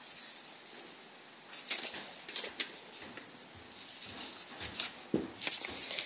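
Faint rustling and scattered light taps and clicks of paper cut-outs being handled, with a few slightly louder clicks about one and a half seconds in and near the end.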